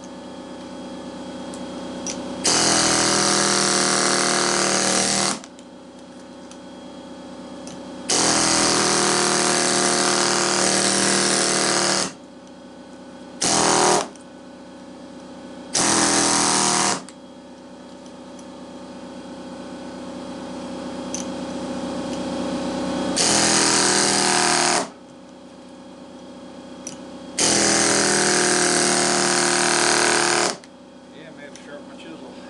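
Pneumatic air hammer with a chisel bit rattling in six bursts of a few seconds each, chiselling apart a small electric fan motor from a window AC unit. A fainter steady hum runs between the bursts and grows louder before each one.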